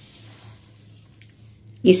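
Faint, soft hiss of granulated sugar being poured onto a creamy dressing in a bowl, strongest in the first half second, over a steady low hum.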